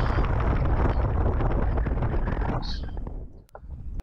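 Wind rushing over the camera microphone of a paraglider in flight: a loud, steady noise with a heavy low rumble that dies away a little after three seconds in.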